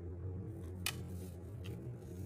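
A metal putty-knife blade being set against a paint-covered roller and its metal frame: one sharp click a little under a second in and a fainter one near the end, over a steady low hum.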